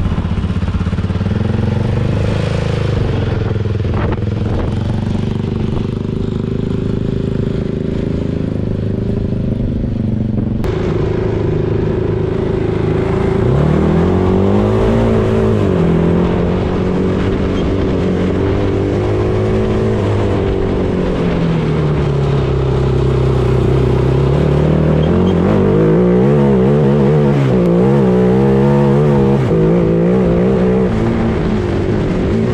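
Sierra rally buggy's engine running at a steady idle, then, from about ten seconds in, revving up and down repeatedly as the car is driven hard over a rough dirt track, with wind and road noise. Near the end the revs rise and fall quickly.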